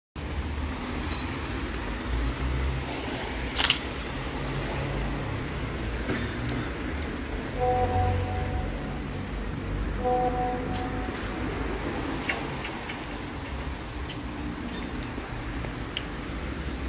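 Street ambience in the rain: a steady low rumble of traffic and hiss, with scattered sharp clicks, the loudest about four seconds in. A short two-note beep sounds twice, around eight and ten seconds in.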